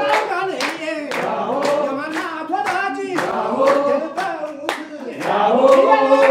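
A group of people singing together unaccompanied with steady rhythmic hand clapping, about three claps a second. The singing swells louder near the end.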